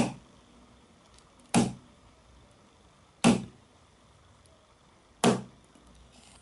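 The pointed can-opener tool of a Swiss Army knife is jabbed hard against a Sony Ericsson Xperia Active smartphone four times, about one and a half to two seconds apart. Each jab is a short, sharp knock.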